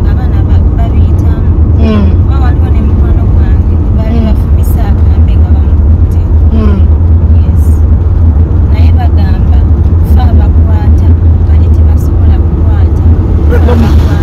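Steady low rumble of a moving car heard from inside the cabin, running without a break under a woman's talking.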